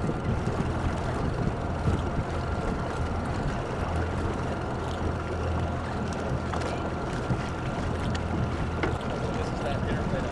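A boat engine idling steadily with a constant low hum, under indistinct voices.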